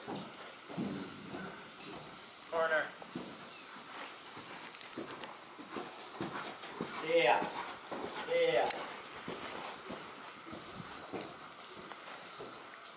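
Three short, indistinct voice sounds, each with a bending pitch, over a low steady background.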